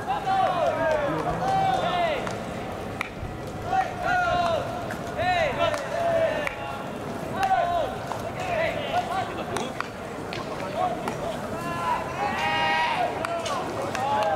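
Baseball players shouting calls during an infield fielding drill: drawn-out yells that rise and fall in pitch every second or two, one loud yell near the end. A few sharp cracks among them are the knocks of the fungo bat.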